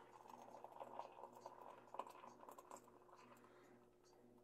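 Faint trickle and splash of just-boiled water poured from an electric kettle into a glass measuring cup, tapering off about three seconds in.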